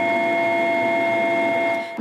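Machinery running with a steady whine of several fixed pitches over a rushing noise, unchanging throughout and cutting off just before speech resumes.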